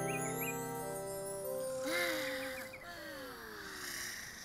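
Cartoon soundtrack music: a held chord with small chirping notes that fades out a little before halfway, followed by a soft airy hiss with chirps and slowly falling whistles as the scene changes.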